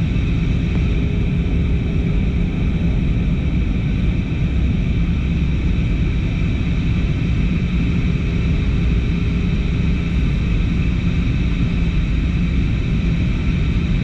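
Jet airliner cabin noise heard from a window seat: the steady rumble and roar of the engines and rushing air, even throughout, with a faint steady hum above it.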